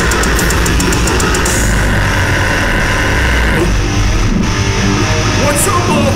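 Heavy metal band playing live through a loud PA: distorted guitars, bass and drums. A little under four seconds in, the dense guitar wall breaks off, with a brief gap before the band carries on.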